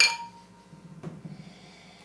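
Two stemmed glasses clinking together in a toast: one bright ring that fades over about half a second. A faint small knock about a second in, then soft sniffing at the glass.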